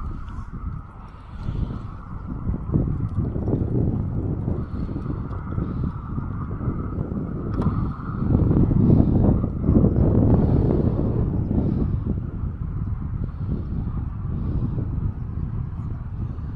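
Wind buffeting the microphone: a loud, gusty low rumble that swells and drops, strongest about eight to eleven seconds in.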